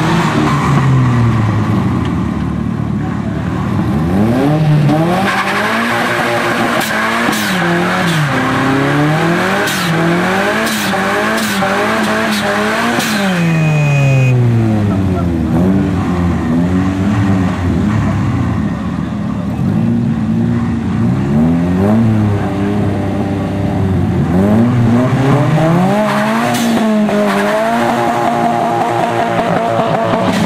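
Car engine revved up and down over and over during a burnout, its tyres spinning and squealing on the asphalt, the screech thickest in the first half.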